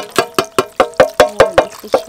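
A fast, even run of metallic taps, about five a second, each leaving a short ringing tone.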